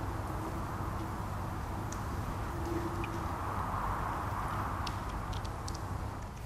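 Steady outdoor background noise, a faint even rush with a low hum, and a few faint short high ticks in the second half.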